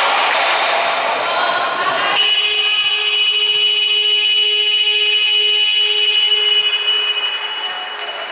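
Scoreboard buzzer in a basketball hall, one steady electronic tone lasting about four seconds, starting about two seconds in and marking the end of the quarter. Before it comes the noise of play: voices and a ball bouncing on the wooden court.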